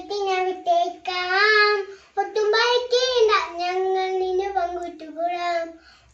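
A young girl singing an action song unaccompanied, in phrases with held notes and a swooping rise and fall in pitch about three seconds in.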